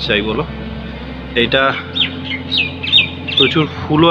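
A bird calling: a quick run of five or six short, high chirps, each sliding downward.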